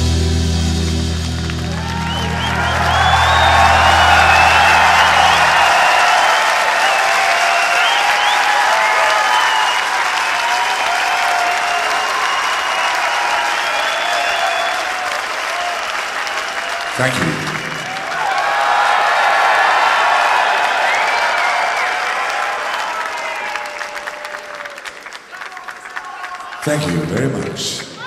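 Large concert crowd cheering and applauding after a live metal song ends; the band's last sustained notes die away a few seconds in. The cheering dips briefly about seventeen seconds in, swells again, then fades near the end.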